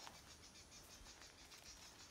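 Near silence with a faint insect chorus in the trees: a thin, high, evenly pulsing trill at about six beats a second.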